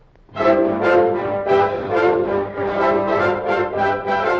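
Radio show orchestra striking up the introduction to a popular song, starting abruptly a moment in and playing on in a steady rhythm.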